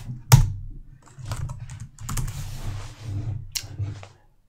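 Computer keyboard being typed on: a handful of separate keystrokes, the first and loudest about a third of a second in.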